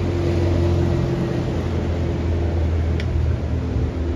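Road traffic: a steady low hum of vehicle engines on the street beside the sidewalk, with a short sharp click about three seconds in.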